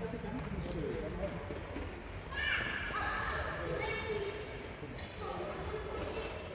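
Background voices of people talking.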